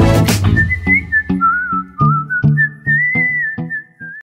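Outro music: a whistled melody over a plucked accompaniment with a regular beat.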